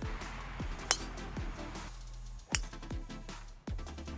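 Two sharp clicks of a golf driver's clubhead striking the ball off the tee, about a second and a half apart, over background music.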